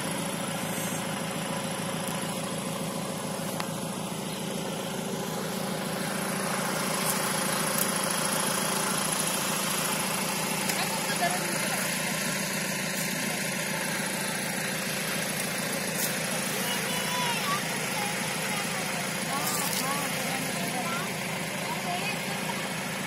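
Steady hum of an idling engine, unchanging throughout, with faint voices in the background.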